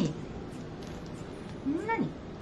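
A domestic cat meowing twice: the tail of one meow at the very start and a second meow near the end that rises then falls in pitch.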